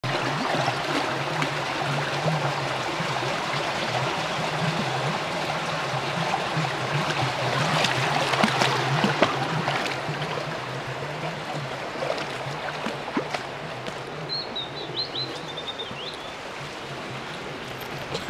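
Shallow stream running over stones, louder in the first half and fading later on, with a few splashes from a dog wading in it about eight or nine seconds in. Near the end, a bird gives a short descending trill.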